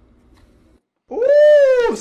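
A cat meowing once: a single drawn-out call about a second in that rises and then falls in pitch.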